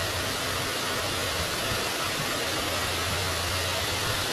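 Steady rushing background noise with a low hum underneath, unchanging throughout.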